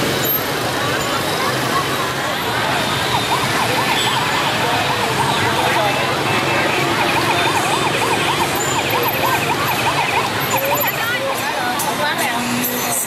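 Electronic siren sound from a toy police-car bubble gun: a fast warble of about four or five rises a second, in two stretches with the longer one in the middle, over the chatter and street noise of a crowd.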